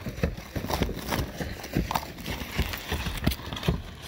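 Footsteps on an asphalt-shingle roof: a run of irregular soft thuds and scuffs.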